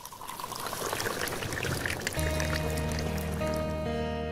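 Intro jingle music: a shimmering, crackly swoosh that swells for about two seconds, then held chords over a deep bass note come in.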